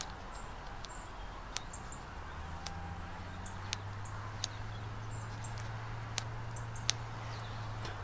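Quiet outdoor ambience: faint birds chirping, a low steady hum that sets in about two and a half seconds in, and a handful of small sharp clicks.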